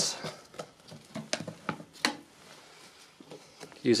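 Clip-on latches of a plastic food-storage box snapped shut onto the lid, a few sharp plastic clicks, most of them between one and two seconds in, with light handling of the box.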